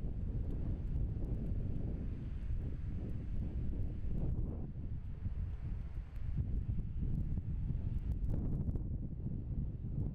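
Wind buffeting the microphone outdoors, a steady low rumble that rises and falls slightly.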